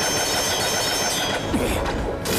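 Sound effect of a flying sword: a steady, loud whooshing whir with thin high ringing tones over it.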